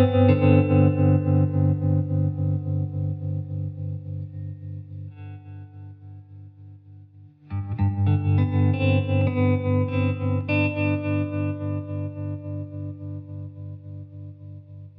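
Background music on an effects-laden guitar: a sustained chord rings with an even pulsing and slowly fades, then a new chord is struck about seven and a half seconds in and fades again.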